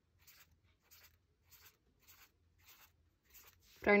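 Felt-tip marker writing digits on a paper pad: a string of short, faint strokes, about two a second. A woman starts speaking near the end.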